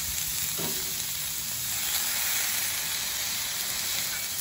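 Sliced onions and balls of ground beef sizzling on a hot Blackstone gas flat-top griddle: a steady frying hiss.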